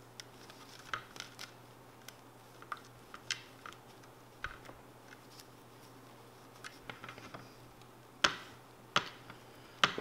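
Cloth rag and fingertips pressing a vinyl wrap down onto a plastic RC truck chassis on a tabletop: scattered light clicks and taps, with two sharper clicks near the end.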